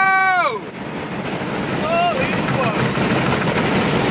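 Steady rush of wind and road noise in a car moving at freeway speed. About half a second in, a loud, long-held high-pitched tone slides down in pitch and stops.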